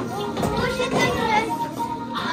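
Young children's voices, singing and calling out, over keyboard backing music.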